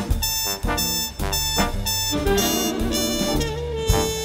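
Big band playing Latin jazz, with a trumpet solo over the rhythm section's steady percussive beat. About halfway through, the horn section comes in with held notes behind it.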